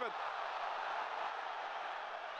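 Football stadium crowd noise: a steady wash of many voices from the stands, with no single voice standing out.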